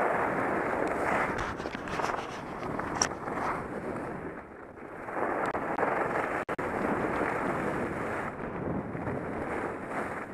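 Wind rushing over a helmet-mounted camera's microphone as a skier glides downhill on snow, easing a little about halfway through, with a very brief dropout in the sound just after.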